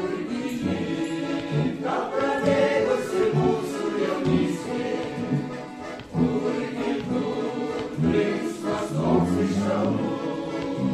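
Mixed vocal ensemble of women and men singing in harmony, with accordion accompaniment.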